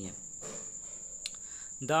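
A pause in speech, filled by a steady high-pitched whine that runs on unchanged, with one faint click just past the middle.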